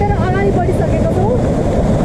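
Steady rushing water of a waterfall and river, with wind buffeting the microphone, and voices heard over it.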